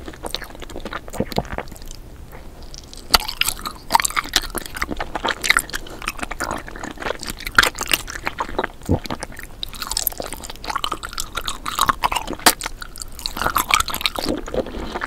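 Close-miked chewing and biting of a red strawberry-shaped jelly sweet, with many sharp crackly crunches and wet mouth clicks, busier after the first few seconds.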